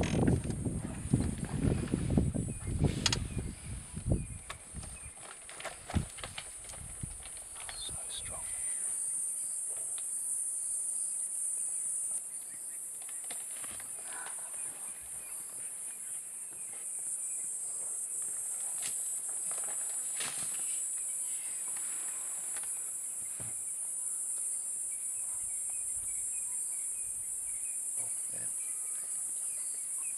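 Steady, high-pitched chorus of insects, with irregular knocks, scrapes and rustles as a leopard wrestles a nyala carcass on a fallen tree. Heavy low rumbling and thumps fill the first several seconds and stop about nine seconds in; scattered sharp cracks follow.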